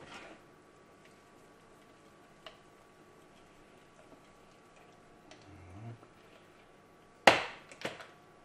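A spatula folding soufflé mixture in a stainless steel saucepan, mostly quiet with a few faint ticks. Near the end there is a sharp metallic clank, then a smaller one, as the utensil strikes the stainless steel mixing bowl.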